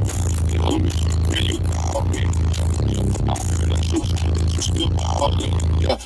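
Bass-heavy music played loud through a car audio system, heard inside the cabin, with the deep bass pulsing to the beat.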